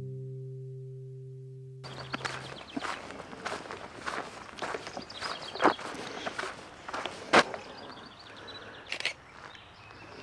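An acoustic guitar note dying away over the first two seconds, then footsteps on a dirt track at about two steps a second, a couple of them louder than the rest.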